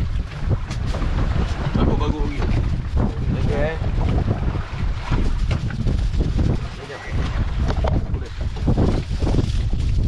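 Wind buffeting the microphone on an open fishing boat at sea: a steady low rumble that swells and eases in gusts.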